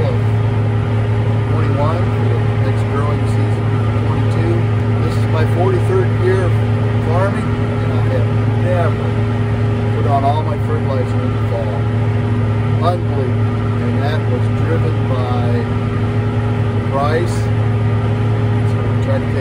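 Tractor engine running at a steady speed, heard from inside the cab as a low, even drone under a man's talking.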